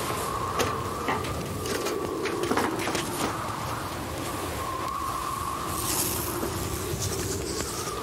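Steady wind with a faint wavering whistle, the sound of a storm blowing up, with a few light clicks and knocks over it.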